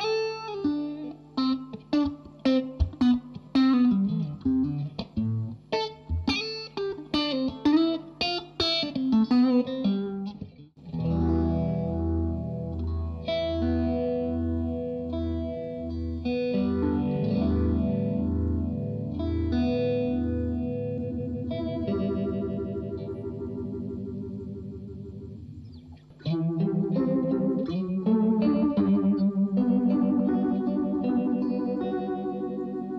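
Electric guitar played through a PastFX Fox Foot Phaser Deluxe, its throaty phase sweep on the tone. First a quick single-note lick, then sustained chords from about eleven seconds in, with a louder chord passage starting near the end.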